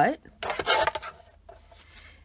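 Sliding paper-trimmer blade drawn along its rail, slicing through a card with a short rasping scrape a little under half a second in, followed by faint rustling of the card being handled.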